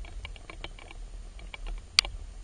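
Underwater sound over a shallow rocky seabed: irregular sharp clicks and crackles, a few a second, over a low rumble of moving water, with one louder sharp click at the very end.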